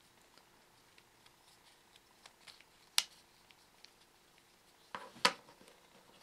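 Small wooden blocks of a snake cube puzzle clicking and knocking together as they are twisted and folded into place by hand: scattered faint clicks, a sharp knock about three seconds in and the loudest one just after five seconds.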